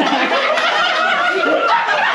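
A group of people laughing and chuckling together, with overlapping voices.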